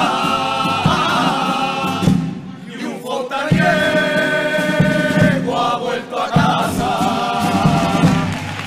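Male carnival chirigota chorus singing in harmony, with drum beats under the voices. The voices drop out briefly about two and a half seconds in, then come back on long held chords that close the song.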